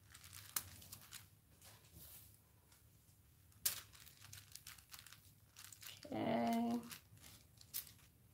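Faint handling noise of nitrile-gloved hands crinkling and rubbing on a silicone coaster mold, with a few sharp taps as it is set on the table. About six seconds in comes a short, louder pitched sound lasting under a second.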